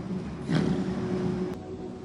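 Steady low drone of a bus engine heard from inside the passenger cabin, with a louder rushing swell about half a second in. A sharp click comes about three-quarters through, after which the hum is quieter.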